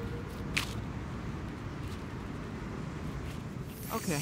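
Steady low outdoor background rumble with a single short click about half a second in.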